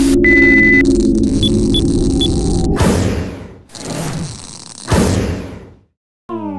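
Electronic title sound effects: a steady high beep, then three short blips over a low buzzing hum, followed by three whooshes about a second apart, cutting off to silence just before the end.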